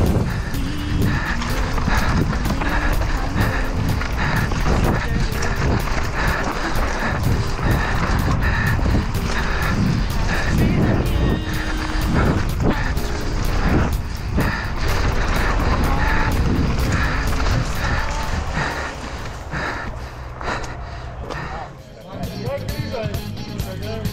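Enduro mountain bike ridden fast down a dirt forest trail, heard from a helmet camera: a continuous rumble of tyres with rattling of the chain and frame over roots and loose ground, under background music. Near the end the riding eases off and a crowd's voices come in.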